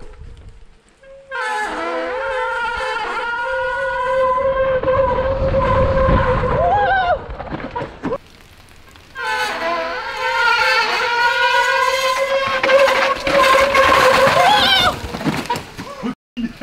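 Mountain-bike disc brakes howling in the wet: a loud, honking squeal on one steady pitch with overtones, wavering and bending as the brakes are dragged down a steep descent, with tyre and trail rumble under it. It breaks off about eight seconds in and starts again about a second later. Noisy brakes like this are normal in the rain.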